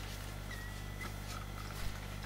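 Quiet room with a steady low electrical hum and faint handling of paper card as glued tabs are curled by hand, with a couple of light taps near the end.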